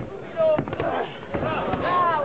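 Several voices shouting over one another, with a few sharp slaps among them; the loudest shout comes about half a second in.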